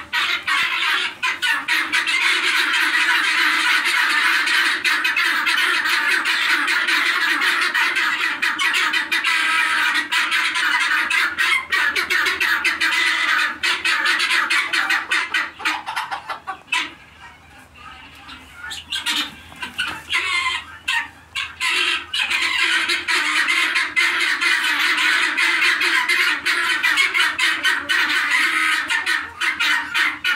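A flock of helmeted guineafowl calling loudly in a fast, continuous chatter of repeated notes. It drops away briefly past the middle, then starts up again.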